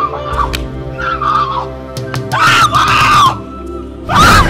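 A woman wailing in drawn-out, rising-and-falling cries, the loudest about two seconds in, over sustained background music.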